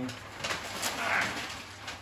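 Flip-chart paper rustling and crackling as the large sheets at the top of the pad are handled and folded over.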